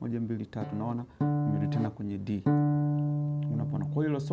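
Acoustic guitar: a note plucked a little over a second in rings for about a second, then a second note is plucked and rings, slowly fading.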